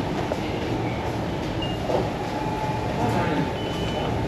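Steady room hum of a fast-food restaurant's dining area, with two short, faint high beeps, one about a second and a half in and one about three seconds in.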